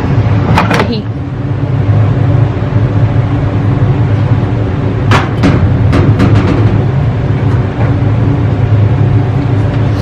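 A machine running with a loud, steady low hum. A few short clunks and rustles come around five to six seconds in.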